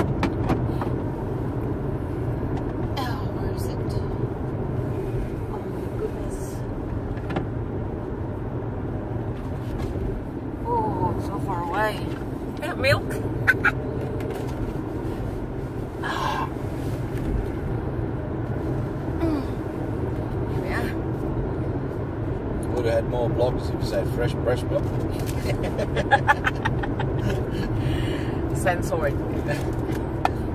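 Steady road and engine noise inside the cabin of a car moving at highway speed, with a few brief knocks and bits of low talk between the occupants.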